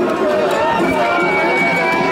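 A large crowd of mikoshi bearers and onlookers chanting and shouting together, many voices overlapping. About a second in, a long, steady high whistle starts and is held.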